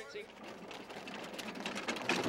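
Faint, steady running noise of a vehicle heard from inside the cab, slowly getting louder.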